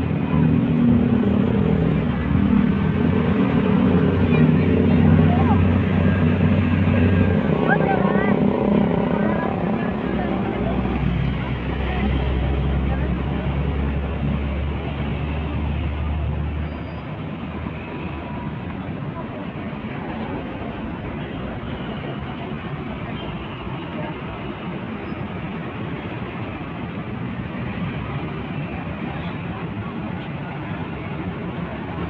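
City street traffic running past, with passers-by talking. A low steady engine hum is loud for the first several seconds and returns from about eleven to seventeen seconds in, after which the traffic noise settles lower and even.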